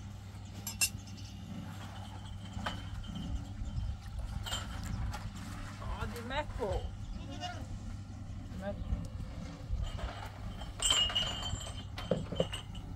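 Yard sounds at a wood-fired griddle: a single wavering animal bleat about six seconds in, and metal bowls clinking against each other near the end, over a steady low hum.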